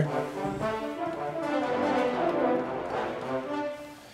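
Sampled French horn section (Steinberg Iconica horns) playing several short staccatissimo notes from a MIDI keyboard, fading out near the end.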